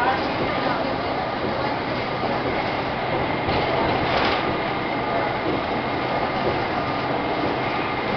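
Cabin noise inside a moving city transit bus: steady engine and road noise with a low hum, and a brief louder hiss a little past the middle.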